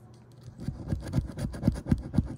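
A large metal coin scratching the coating off a paper scratch-off lottery ticket in rapid, uneven strokes, starting about half a second in.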